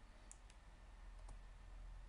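Three faint clicks of computer keyboard keys, two close together near the start and one more about a second later, over a quiet low hum of room tone.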